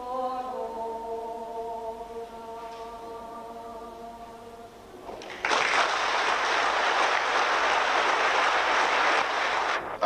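A woman singing unaccompanied, holding the long final notes of a song as they fade. About five seconds in, audience applause starts suddenly and runs steadily until it cuts off just before the end.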